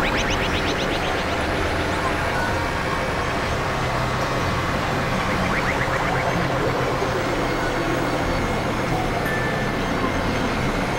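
Dense, steady wash of layered experimental electronic noise and drones, several tracks running on top of one another with a low hum underneath. A run of quick, rapidly repeated chirps comes right at the start and again about halfway through.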